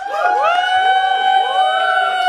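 An electronic synthesizer tone that comes in suddenly and holds one steady note. Several overlapping swoops rise in pitch and settle onto that same note.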